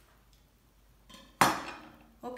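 A metal chef's knife set down on a wooden cutting board: one sharp clack about one and a half seconds in, the blade ringing briefly as it dies away, after a faint knock just before.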